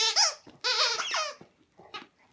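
Squeaky dog toy squeaking as a dog chews on it: a short high squeak at the start, then a longer wavering squeak that stops about a second and a half in.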